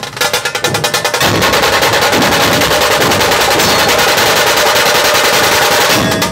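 Dhol-tasha ensemble drumming: barrel-shaped dhols beaten with stick and hand under stick-played tasha kettle drums. About a second in, the distinct beat breaks into a fast, continuous tasha roll over the dhols.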